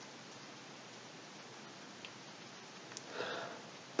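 Quiet room tone with steady microphone hiss. Two faint clicks about two and three seconds in, then a short soft breath near the end.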